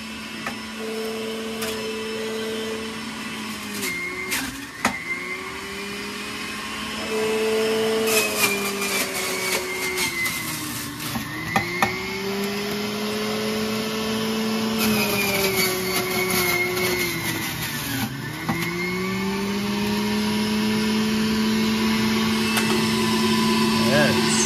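Breville centrifugal juicer's motor running, its pitch sagging three times under load as celery stalks are pushed onto the spinning cutting disc, then climbing back. Crackly shredding noise comes in twice in the middle.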